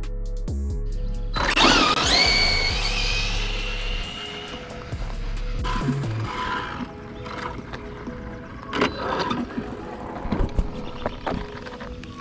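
Brushless electric motor of a Losi 22S no-prep RC drag car whining sharply up in pitch for about three seconds as the car launches at full throttle, over background music.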